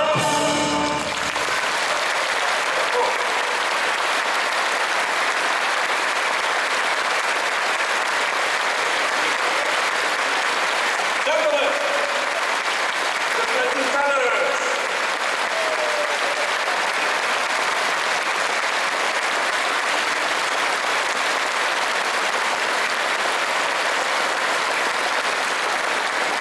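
A sung and orchestral final chord cuts off about a second in, and a large audience applauds steadily for the rest of the time, with a few voices calling out near the middle.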